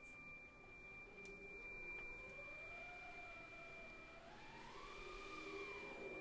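Very soft wind-band music: a high, steady, pure tone is held for several seconds. Beneath it, from about a second and a half in, a faint lower tone slowly swoops up and down in pitch.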